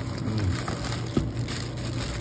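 Plastic packing bags crinkling and rustling as hands rummage in a cardboard box and lift out a bagged CB microphone, with a single sharp click about a second in.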